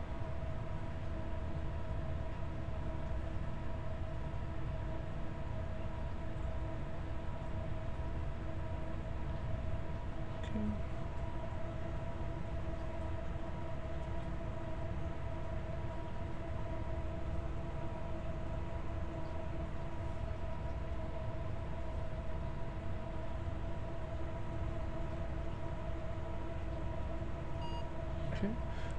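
Steady background hum: a low rumble with a faint, even whine made of a few steady tones.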